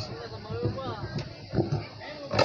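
Several voices talking over one another, with a few sharp knocks, the loudest about a second and a half in.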